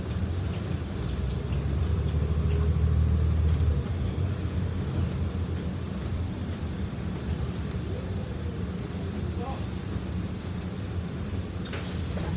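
Transit bus engine and drivetrain heard from inside the cabin, a steady low rumble as the bus rolls slowly, swelling for a couple of seconds and easing off about four seconds in. A short sharp sound near the end.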